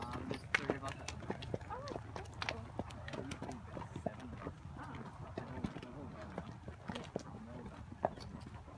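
Horses' hooves clip-clopping at a walk on a packed dirt track, in uneven clicks, with faint voices of other riders under them.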